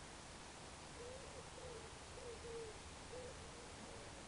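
A bird calling faintly in a run of short, low, wavering notes, starting about a second in, over a steady hiss.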